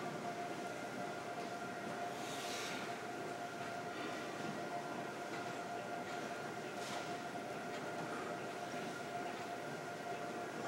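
Steady background noise with a constant mid-pitched hum, and two brief hisses about two and a half seconds and seven seconds in.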